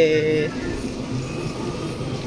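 A voice trails off in the first half second, then a steady store background hum with a low murmur of other sounds.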